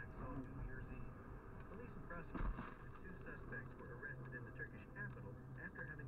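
Dashcam audio from inside a car at highway speed: steady road hum with faint talk from the car radio, and a single short thud about two and a half seconds in as a slab of ice strikes the windshield and cracks it.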